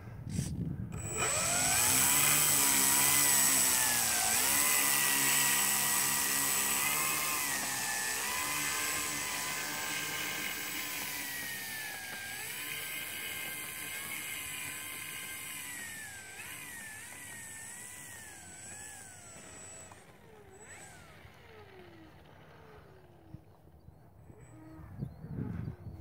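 Electric motor and propeller of a Dynam Albatros RC biplane running, a whine whose pitch dips and rises as the throttle is worked. It slowly grows fainter and fades out about twenty seconds in.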